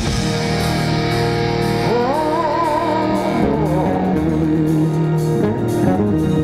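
Live rock band playing: electric guitar and drums with a steady beat. About two seconds in, a high melody note rises and is held with a wavering vibrato for a second and a half before falling away.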